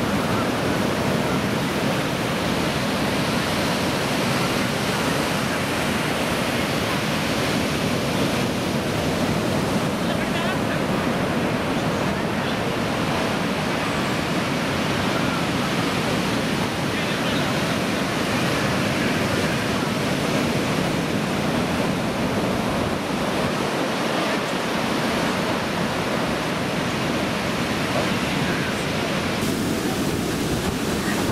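Heavy surf breaking on a sandy beach in a steady, unbroken rush, the sea still rough after an overnight storm.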